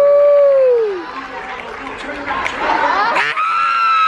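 Theatre audience reacting to a magic trick: a long drawn-out vocal "ooh" that rises, holds and falls away in the first second, crowd chatter, then a high shout that swoops up and holds near the end.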